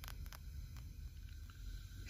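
Quiet background: a faint low rumble with a few soft clicks.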